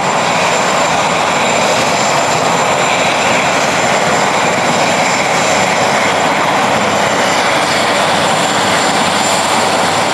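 Sikorsky VH-3D Sea King helicopter (Marine One) running on the ground with its main rotor turning: a loud, steady rush of rotor and twin-turbine engine noise with a thin, constant high whine, mixed with heavy rain.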